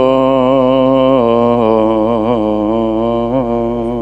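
A solo male voice singing Church Slavonic Orthodox chant into a microphone, holding one long final note with a few small melodic turns on it.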